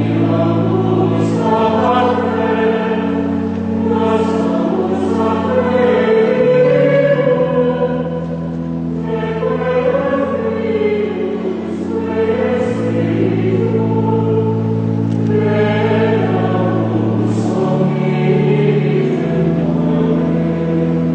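Choir singing a Latin liturgical chant, with steady low held notes underneath that move to a new pitch every few seconds.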